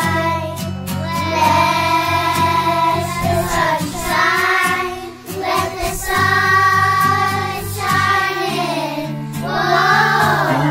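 A group of young children singing together in long held notes, accompanied by a strummed acoustic guitar.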